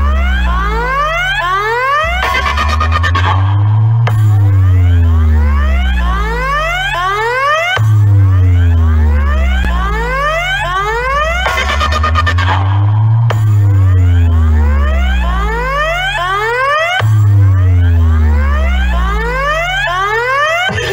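Electronic bass-test track for a DJ sound-box competition, played loud. Deep bass sweeps glide down and up again every few seconds under a stream of quick rising whistle-like glides.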